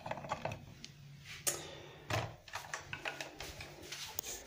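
Light clicks and knocks of a plastic Geberit flush valve being handled, its freshly reseated silicone seal pressed home, with the two loudest knocks about one and a half and two seconds in, over a faint steady hum.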